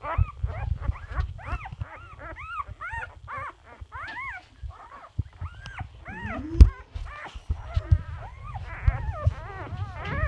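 A litter of young puppies whimpering and squealing: many short, high cries that rise and fall, overlapping one another without a break. Low bumps of handling sit underneath, with one sharp knock about six and a half seconds in.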